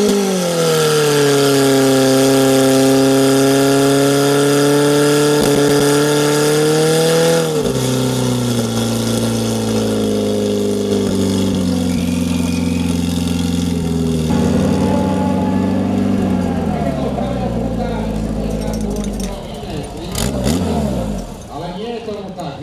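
Portable fire pump engine revving up and running hard at high revs while pumping water to the hose lines, dropping to a lower steady speed about seven seconds in, then winding down near the end with a short rev.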